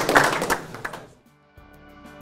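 Audience applause dying away in the first second, then a brief hush and the start of music with sustained notes.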